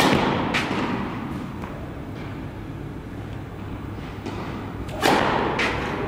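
Tennis racket striking the ball on a serve, a sharp crack that rings on in the echo of a large indoor tennis hall, with a fainter knock about half a second later. Another loud racket hit comes about five seconds in, followed by a smaller knock.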